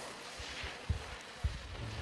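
Skis scraping and carving over hard-packed snow in a slalom run, a steady hiss with a couple of short low thumps.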